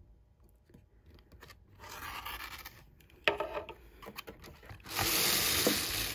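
Rotary cutter blade slicing through quilting fabric along an acrylic ruler on a cutting mat, trimming the dog ears off a pieced block: three scraping cuts, the last one, about a second long near the end, the loudest.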